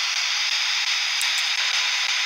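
Steady hiss of static, with a couple of faint ticks about a second in.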